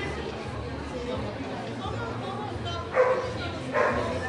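A dog barks twice, about three seconds in and again just before the end, over steady background chatter.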